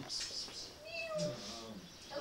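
A young kitten meowing once, a short call about a second in.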